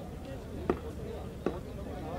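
A cricket ball being bowled and played: two sharp knocks about three-quarters of a second apart, the ball hitting the pitch and the bat, with faint voices in the background.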